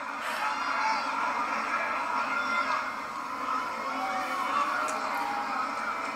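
Wrestling arena crowd noise from the broadcast playing in the room: a steady din of the crowd with no clear breaks.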